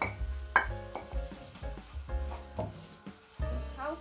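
Diced onions, garlic and chilli sizzling in hot oil in a non-stick frying pan, stirred and scraped with a wooden spatula, under background music.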